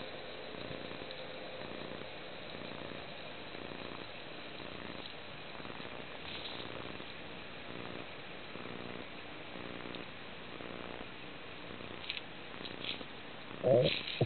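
Muffled underwater ambient noise heard through a waterproof camera housing, a steady low rush with a faint hum. Near the end come a few light clicks and a brief, louder muffled burst.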